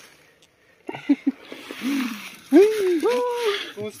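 About a second of near quiet, then a man's voice talking and making drawn-out exclamations.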